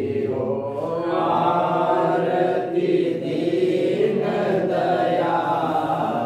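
Men's voices chanting an aarti hymn together in one unbroken sung line, the notes held and gliding with no pauses.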